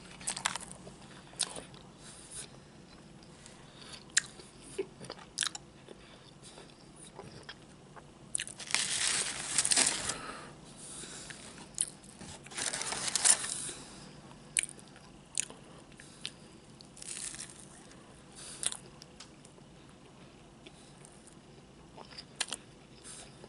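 Close-miked biting and chewing of crunchy fried food, with scattered sharp mouth clicks and two longer, louder spells of crunching about nine and thirteen seconds in.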